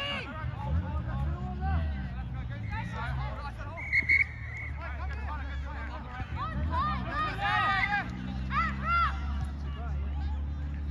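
Overlapping shouts and calls from players and sideline onlookers at a field-sport game, with one short, steady referee's whistle blast about four seconds in.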